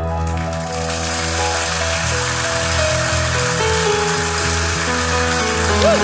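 Live worship band playing an instrumental intro: sustained keyboard chords over a steady bass, with a bright cymbal wash coming in right at the start.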